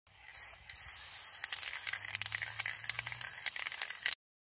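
Aerosol spray-paint can spraying through a stencil in a steady hiss, with small crackles through it and a short break about half a second in.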